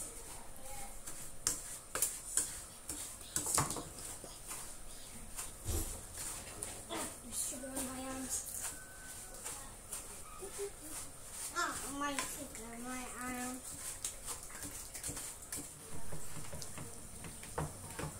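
A wooden spatula stirs and scrapes brown sugar melting in a frying pan, with irregular clicks and scrapes against the pan under a steady high hiss. Short bits of voices come in a few times in the middle.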